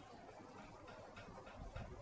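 Quiet room with faint small ticks and a soft low thump about three-quarters of the way in.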